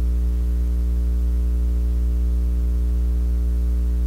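Steady electrical mains hum with a buzz of evenly spaced overtones, unchanging throughout.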